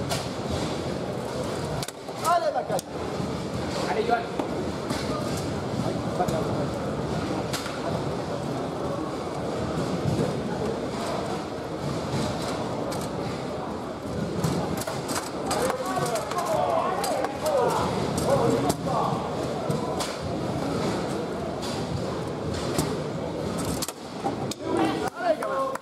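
Foosball play on a Bonzini table: sharp, irregular knocks and clacks of the ball against the plastic players, the table walls and the rods, over a steady murmur of indistinct voices in a hall.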